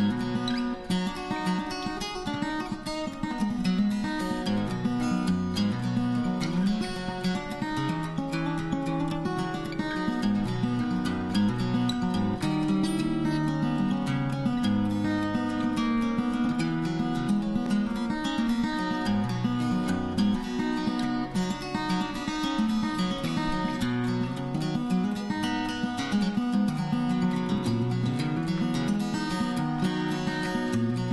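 Acoustic guitar music, plucked and strummed, at an even level throughout.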